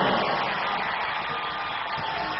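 Basketball arena crowd noise, a steady din from the stands that fades slightly, carried on a TV broadcast.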